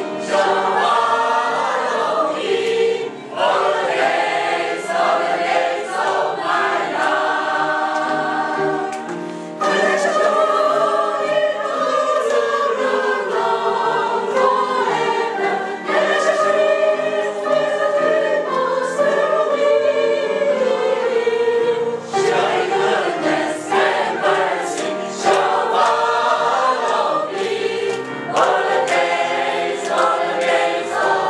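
A small group of adults singing a hymn together, several voices at once, continuously throughout.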